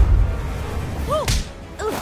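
Film fight sound effects: a heavy low thud right at the start, then a sharp whip-like whoosh of a swung blow about a second and a quarter in, over background music.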